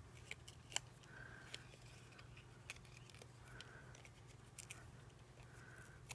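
Faint handling of paper and foam adhesive dimensionals: scattered small clicks and a few soft scrapes as the plastic backings are peeled off and the pads are pressed onto die-cut cardstock clouds.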